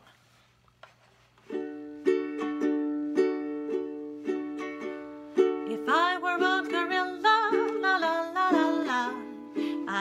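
Ukulele strummed in a steady rhythm of about two strokes a second, starting after a second and a half of quiet. A woman's singing voice joins about six seconds in.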